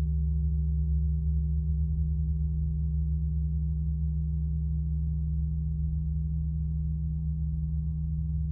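A low, sustained musical drone: several deep bass tones held steady without any change in pitch, easing slightly quieter over the seconds.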